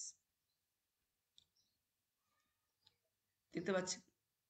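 Two faint computer-mouse clicks about a second and a half apart, against near silence, with a brief burst of a man's speech near the end.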